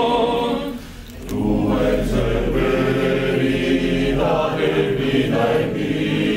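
Male choir singing a cappella in sustained multi-part harmony. The sound thins out briefly about a second in, then the full chord returns.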